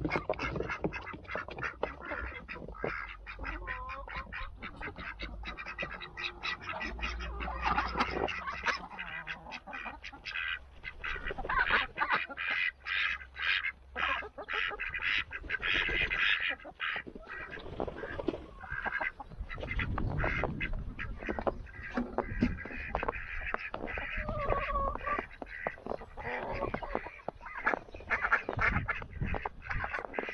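A flock of Indian Runner ducks quacking in rapid, overlapping calls, busiest around the middle of the stretch and again near the end.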